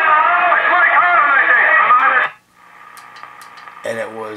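A 1938 Silvertone 6125 tube radio playing an AM broadcast station's speech through its speaker, thin and cut off in the treble, while tuned to 1100 kc on its broadcast band. The programme drops away about two seconds in, leaving a faint steady hum with a few light clicks.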